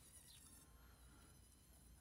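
Near silence, with only a faint, steady high-pitched whine from a small handheld rotary tool running a ball-shaped burr against wood.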